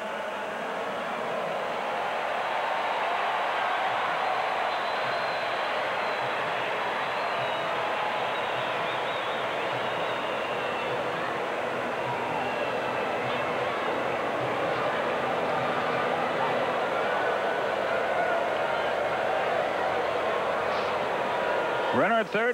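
Ballpark crowd noise: a steady hum of many voices from the stands, swelling slightly in the first few seconds and then holding even.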